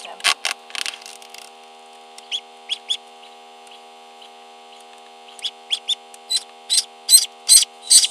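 Newly hatched ducklings peeping in short, high chirps: a few near the start, then coming faster and louder over the last few seconds. A steady electrical hum runs underneath.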